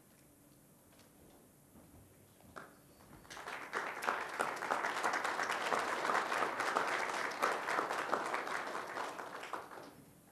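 A group of people applauding, starting about three seconds in and stopping abruptly just before the end.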